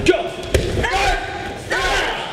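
A sharp thud about half a second in, with a softer knock right at the start: barefoot martial-arts students' kicks and landings on the training mats. A man's voice calls out in between.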